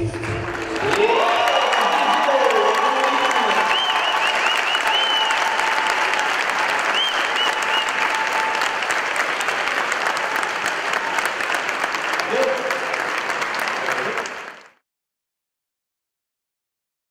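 Audience applauding and cheering, with a few high wavering calls over the clapping. The dance music stops about a second in, and the applause fades out about a second and a half before the end.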